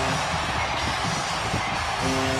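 Ice hockey arena goal celebration: music over the arena sound system with the crowd cheering, marking a home-team goal.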